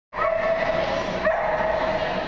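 A dog barking: two high barks about a second apart.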